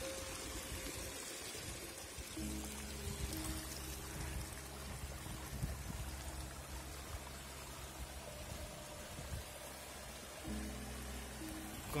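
Shallow creek trickling over stones, with slow background music of held low notes coming in about two seconds in.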